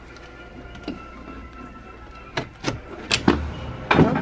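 A handful of sharp clicks and knocks in the second half, from the stateroom's veranda door being handled as it is opened. Faint music plays behind them.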